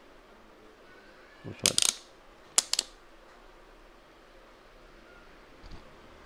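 Sharp metallic clicks and scrapes of multimeter probe tips pressed against the terminals of a small homemade lead-acid cell: a cluster of clicks about a second and a half in, a second one about a second later, and a faint tick near the end.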